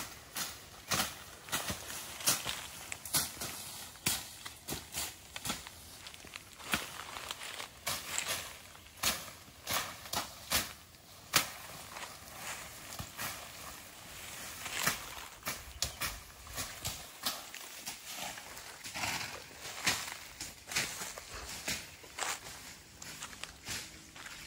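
Irregular crunching and rustling of dry leaves and cut brush, with footsteps through the dry undergrowth.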